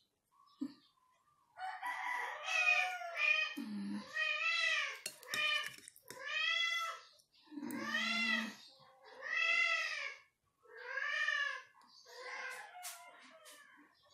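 Very young kitten crying: a string of about ten high meows, each rising and then falling, about a second apart, starting a second and a half in.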